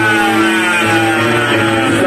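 Loud live music through a concert sound system: a sustained pitched sound slides steadily down in pitch over two seconds while low notes are held underneath, with no vocals.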